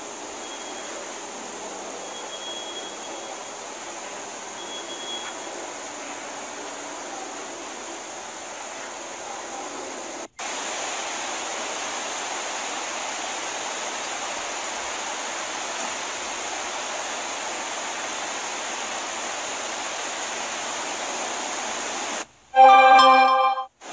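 Steady, even hiss of background noise with no distinct events. It drops out briefly about ten seconds in and comes back slightly louder.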